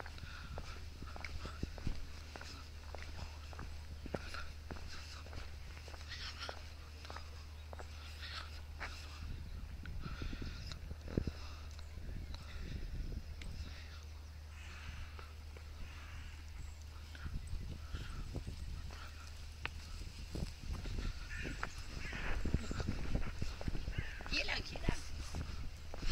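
Outdoor lakeside ambience: footsteps on a paved path with short animal calls, most likely birds, now and then over a steady low rumble.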